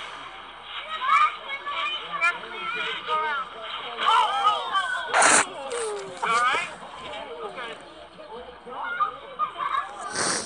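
High-pitched voices shouting and squealing on the soundtrack of a trampoline-fails video clip. A short, sharp noise comes about five seconds in.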